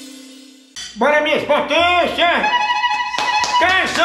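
Intro theme music fading out, then after a sudden cut, loud voices calling out in a run of short shouts that rise and fall in pitch, with a few held notes in the middle.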